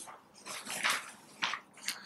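Sheets of paper rustling as they are handled, in a few short bursts.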